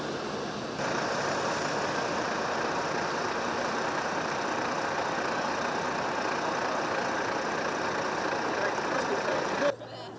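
Busy city street ambience: road traffic, including buses, running with indistinct voices of passers-by. The sound steps up a little under a second in and drops away abruptly just before the end.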